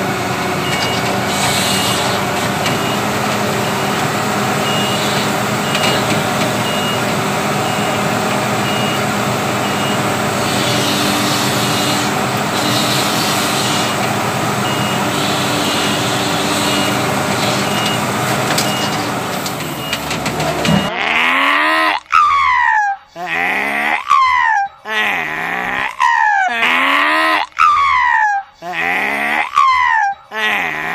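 W130 wheel loader's diesel engine running steadily as the machine works, with a high pulsing beep repeating over it. About two-thirds of the way through, the engine sound cuts off abruptly and a sound sliding down in pitch takes over, repeated about once a second with short gaps.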